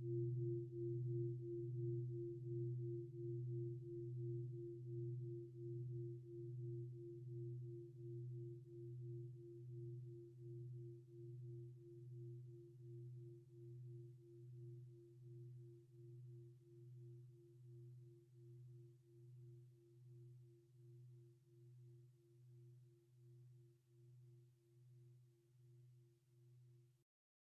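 A meditation gong's long ringing decay: a low, steady hum with a higher overtone, wavering in a slow, even pulse and fading gradually. It is rung to close the meditation part of the session.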